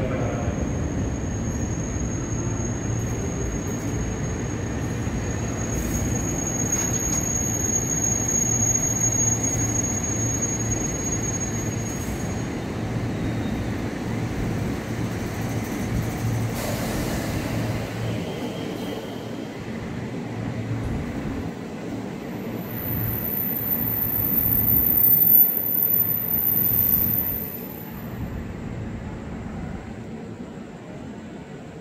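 A KRL Commuter Line electric train running along the platform, its wheels rumbling steadily on the rails. A thin high squeal is heard over the first dozen seconds, and a higher, louder squeal comes about three quarters of the way in. The rumble dies down near the end as the train pulls away.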